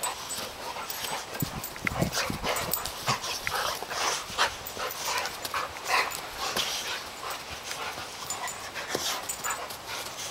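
A boxer and a labradoodle play-fighting, rearing up and grappling: a dense, irregular run of short dog noises and scuffles throughout.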